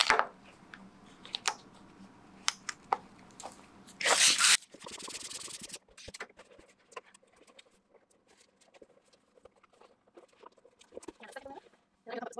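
Hand balloon pump pushing air into a latex balloon: a loud rush of air about four seconds in, lasting about half a second, then a softer hiss for about a second. Around it, small clicks and rubbing of latex and plastic as the balloon is worked onto the nozzle and then handled.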